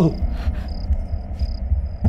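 Crickets chirping: short, high chirps repeating about twice a second over a low steady rumble.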